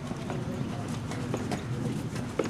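Footsteps on a concrete driveway: several separate steps of someone walking.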